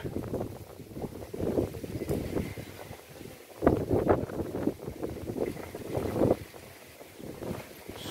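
Wind buffeting the microphone, an uneven low rumble, with a couple of short stretches of indistinct speech about four and six seconds in.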